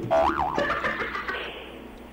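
A short comic sound effect: a pitched tone that swoops down and back up, followed by a few steady tones that fade out within about a second and a half.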